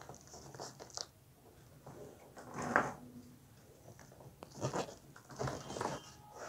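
Thin clear plastic balloon crinkling and rustling in the hands as its neck is worked onto a hand air pump's nozzle. The sound comes as scattered short rustles and clicks, with a louder crinkle about two and a half seconds in and a run of them near the end.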